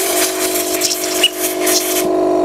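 Compressed-air blow gun hissing in repeated short blasts as it blows sanding dust off a cordless orbital sander. Under it runs a steady motor hum that carries on after the air stops near the end.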